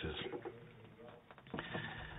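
A man's faint, short voiced sound about one and a half seconds in, picked up by a lectern microphone in a quiet hall.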